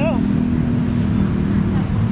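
Steady low rumble of road traffic and running engines.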